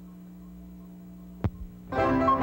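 Steady electrical mains hum on an old recording's soundtrack, with a single sharp click about one and a half seconds in. Music begins right at the end.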